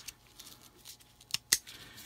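Cheap aftermarket seat belt's metal latch fitting and webbing handled and pulled apart: faint rustling, then two sharp metallic clicks in quick succession about a second and a half in, the second the louder. The fitting comes apart in the hand because it is not fastened well.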